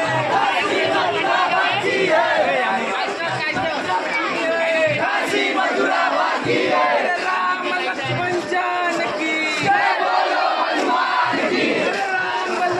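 A large crowd of many voices shouting and calling out together without a break, the voices overlapping into one loud, continuous din.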